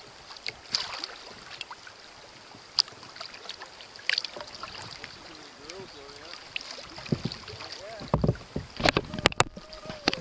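Kayak paddling on calm water: paddle blades dipping and dripping, with scattered small splashes and clicks, then a cluster of louder knocks and thumps near the end.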